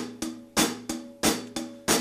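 Drum kit playing a rock groove, with strong hits about three a second and the drums ringing on between them.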